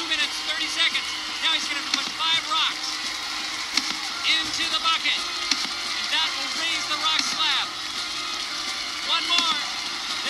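Many high-pitched young voices shouting and yelling in short overlapping calls, with background music underneath.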